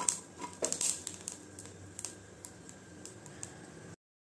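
Green chilies roasting in a hot pan: irregular crackles and ticks, several louder pops in the first second, then sparser. The sound cuts off suddenly just before the end.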